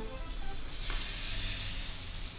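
Crêpe batter sizzling in a hot pan: a steady hiss that sets in about a second in.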